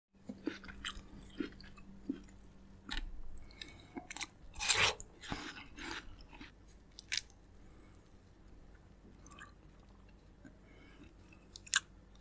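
Close-miked eating of juicy fresh fruit: scattered wet bites, smacks and chewing, with the loudest bite about five seconds in.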